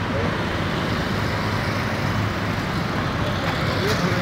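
Steady road traffic noise from vehicles moving along a city road, engines and tyres, with a faint voice near the start and end.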